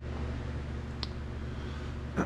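Steady low hum of machine-shop equipment, with a single faint click about a second in.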